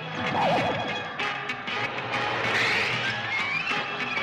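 Cartoon action music score, with a warbling sound effect that falls in pitch about half a second in and a rising sweep in the middle.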